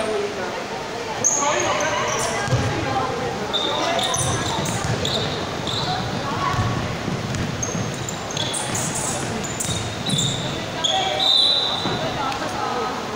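Basketball game on an indoor hardwood court: sneakers squeaking sharply and repeatedly on the floor as players run, with the ball bouncing and footsteps thudding in a large echoing hall.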